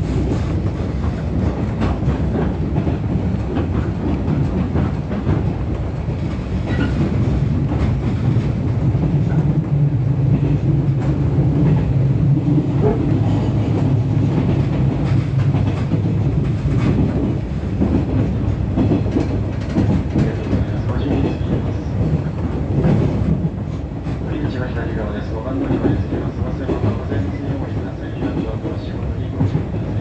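Cabin of a 415 series electric train running along: a steady low rumble of wheels on rail with a traction-motor hum, growing louder through the middle of the stretch, with a few clacks from the track.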